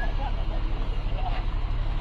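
Engine of a lifted Jeep Wrangler running as it rolls slowly, a deep steady rumble. People's voices chatter around it.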